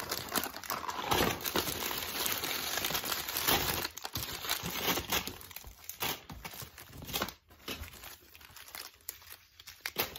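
A bag and candy wrappers crinkling and rustling as hands rummage through gifts. The crinkling is dense for the first few seconds, then thins out to scattered rustles.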